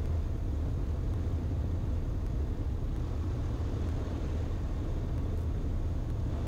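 Steady low drone of a 1948 Ercoupe 415-E's Continental O-200 engine and the airflow in flight, with the aircraft in the landing pattern on approach.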